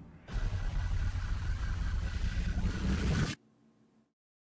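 Loud rushing, rumbling noise from the animated film's soundtrack, starting a moment in and cutting off suddenly after about three seconds.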